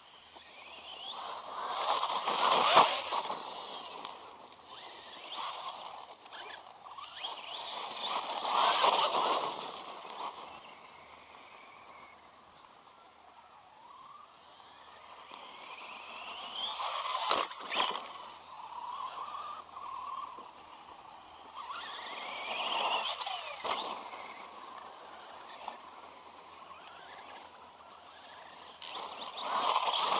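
Electric motor and drivetrain of a 3S-powered RC monster truck whining as it speeds up and slows down across dirt. The whine rises and falls in pitch in about five swells as the truck passes close and pulls away, with a sharp knock at a couple of the loudest moments.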